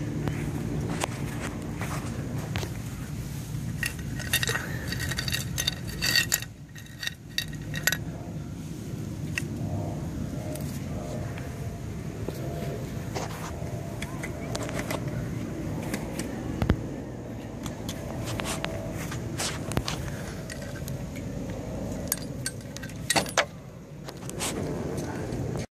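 Small metal objects jingling and clinking in scattered clicks, with denser bursts of jingling about a quarter of the way in and again near the end, over a steady low rumble.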